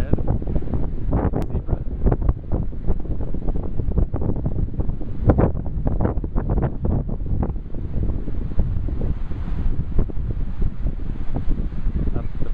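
Wind buffeting the microphone outdoors: a loud, low, gusting noise that goes on throughout.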